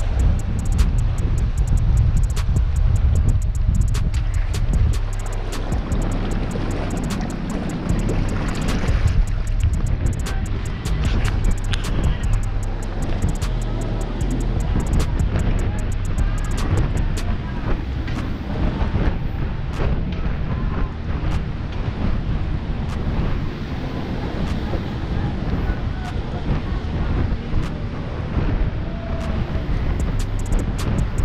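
Wind buffeting the microphone over sea surf washing on a rocky shore, with music underneath and scattered clicks and knocks.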